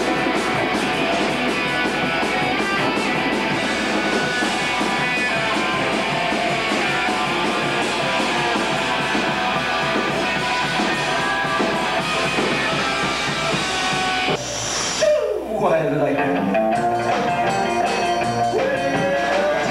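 Live rockabilly band playing loud: electric guitar, upright bass and drums. About fourteen and a half seconds in, the music cuts abruptly to another performance, which opens with a falling pitch sweep before the band carries on.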